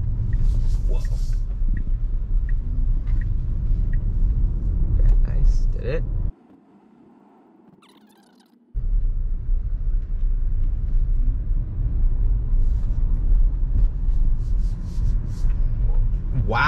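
Steady low rumble of road and tyre noise inside a Tesla Model Y's cabin as the electric car drives through a turn. The rumble cuts out suddenly for about two seconds in the middle, then returns.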